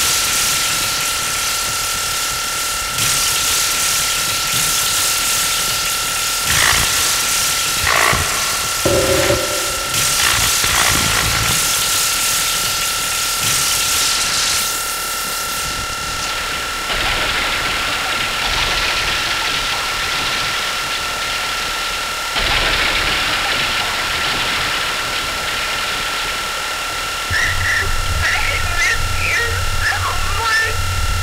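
Live industrial electronic music from hardware electronic instruments, in a beatless noise passage: harsh noise that swells and drops every few seconds over a steady high-pitched whine. A low bass tone comes in near the end.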